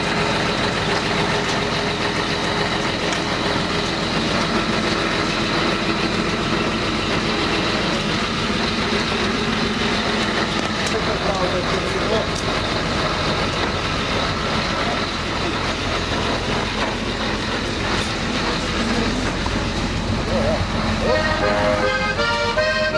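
Diesel engine of a backhoe loader running steadily, with people's voices under it.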